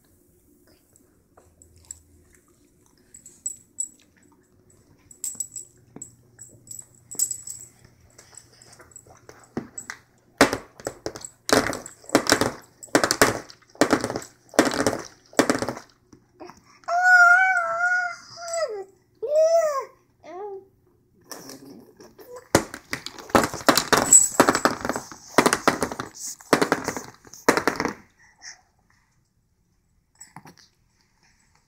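A plastic Philips Avent sippy cup knocked repeatedly against a plastic high-chair tray, in two runs of sharp knocks, about one or two a second, the second run denser. Between the runs a baby lets out a high squeal that wavers in pitch.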